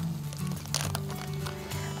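Background music with steady low notes, and a plastic bag of shredded cheese being pulled open, with a short crinkle about three quarters of a second in.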